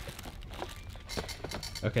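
Faint handling noises: a few light clicks and knocks as things are moved about on a counter, over a low steady room hum.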